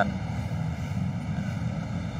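Steady low rumbling noise with no distinct events.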